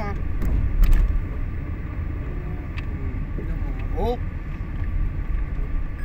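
Car cabin noise while driving: a steady low rumble of engine and tyres on the road, with a couple of sharp clicks about a second in.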